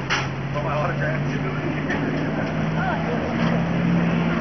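Truck engine running with a steady low hum that rises in pitch partway through as it is revved, with voices talking underneath.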